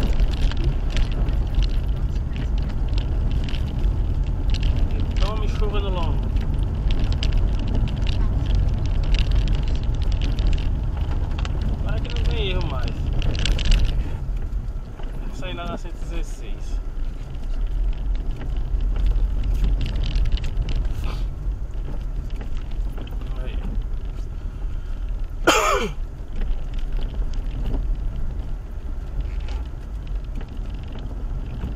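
Vehicle driving on a wet road in the rain: a steady low engine and road rumble, with rain and spray crackling against the vehicle throughout.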